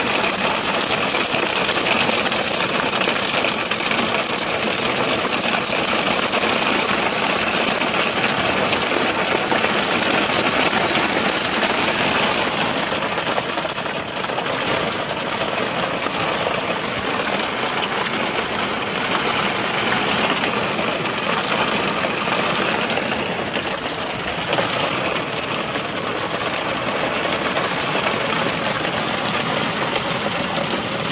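Heavy rain and hail drumming on a car's roof and glass, heard from inside the cabin as a loud, dense, steady patter that eases slightly about halfway through.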